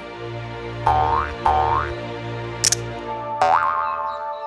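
Cartoon background music with three short rising boing-like sound effects, about a second in, half a second later and near the end, and a brief click in between.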